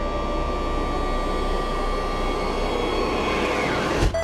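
A steady, loud drone of noise with a few faint held tones inside it: the sound design under a TV drama's title sequence.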